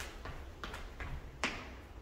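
Sneakered feet landing on a rubber gym floor while running in place with high knees: about four thuds a little under half a second apart, the last the loudest.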